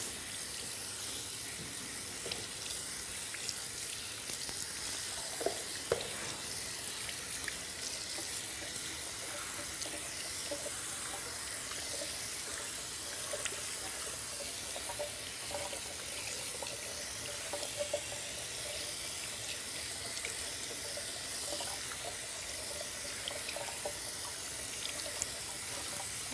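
Bathroom sink tap running steadily, water splashing into the basin as someone washes at it, with a few small clicks now and then.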